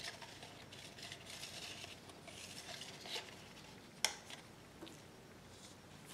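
Faint scraping and tapping of a stir stick against plastic cups as acrylic paint is scraped and layered into a cup, with one sharp click about four seconds in.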